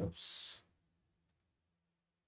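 A short hiss as the narration trails off, then two faint, quick computer mouse clicks a little over a second in.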